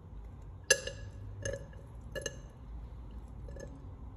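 Glass pipette clinking against a glass test tube: one sharp, ringing clink about three-quarters of a second in, then two lighter clinks, with faint ticks near the end.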